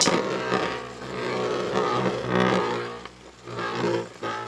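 Two metal-wheeled Beyblade spinning tops whirring as they grind against each other in the stadium: a droning hum that swells and fades, with sharp clicks as they strike.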